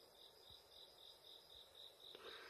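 Faint cricket chirping: a high note repeated evenly about four times a second, over a faint steady higher insect trill.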